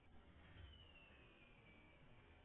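Near silence with a faint low rumble, and one faint thin whistle gliding slowly downward in pitch, starting about half a second in and lasting about a second and a half.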